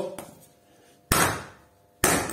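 A hammer striking a cut half of a car alternator's steel stator, once about a second in with a brief metallic ring, and again right at the end. The stator half is being hammered straight so its copper windings pull out more easily.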